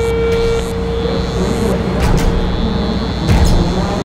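Outro sound design for a video's closing graphics: a steady low rumble under a single held tone that fades away over the first three seconds, with short swooshing hits about two seconds in and again near the end.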